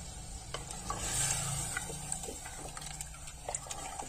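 Wooden spatula stirring a watery pea curry in an open pressure cooker pot: scattered light scrapes and taps against the pot over a faint steady hiss of the simmering liquid.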